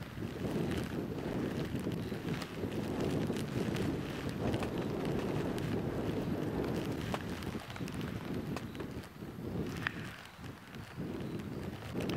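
Storm wind gusting hard across the microphone, a steady low rush that eases for a moment about ten seconds in.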